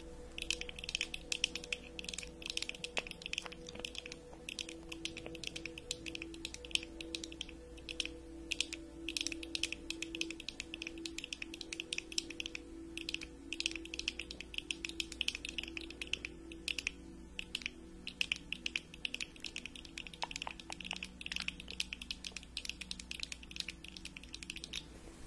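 Long acrylic fingernails tapping and clicking rapidly on the frames and lenses of wire-rimmed eyeglasses, in dense runs of light clicks with brief pauses. Faint steady background tones sit underneath.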